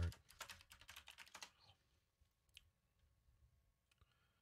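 Computer keyboard and mouse clicks: a quick run of taps in the first second and a half, then near silence with two single clicks.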